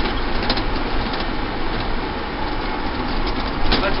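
Interior noise of a small shuttle bus on the move: steady engine and road noise in the cabin, with one short click about half a second in.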